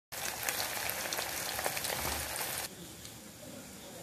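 Egg balls deep-frying in hot oil: a dense sizzle full of small crackles, which drops abruptly to a quieter, steady sizzle about two and a half seconds in.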